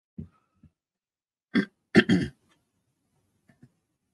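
A person's short throat noises: two rough bursts, about one and a half and two seconds in, the second a little longer.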